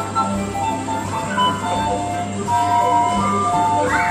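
Coin-operated kiddie carousel playing a simple electronic jingle of clear single notes as it turns, over a steady low hum.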